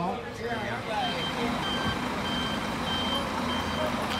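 Tour coach's reversing alarm, a high single-tone beep repeating at an even pace from about a second in, over the low, steady running of the coach's engine as it backs and turns.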